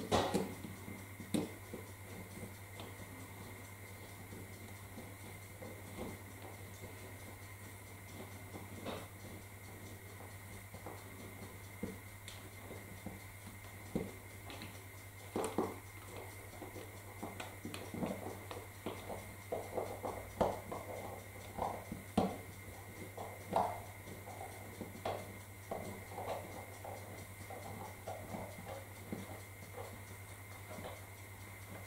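Clear plastic bag crinkling and small parts clicking as hands handle a model overhead-line mast over the bag, in short scattered bursts that come thicker in the second half.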